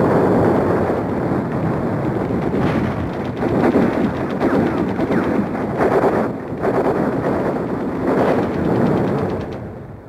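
Continuous battle gunfire: rapid machine-gun bursts and rifle shots packed densely together, fading down near the end.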